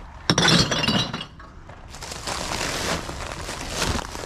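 Glass bottles tossed onto a load of empty cans and bottles: one loud clattering crash of clinking glass about a quarter second in, dying away within a second. Softer rustling noise follows.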